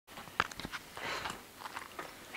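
A few soft clicks and rustling right at the microphone as a ferret noses up against the phone.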